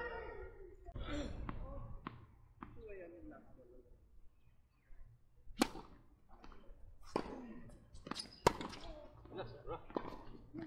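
Tennis balls struck by rackets in a doubles rally: three sharp pops about a second and a half apart, from about five and a half seconds in, the last the loudest. Players' voices are heard before and after the shots.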